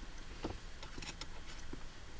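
Faint scattered clicks of hand tools on metal parts as a nut is held with a wrench and an Allen screw is fitted on a short-throw shifter. One click about half a second in is a little stronger.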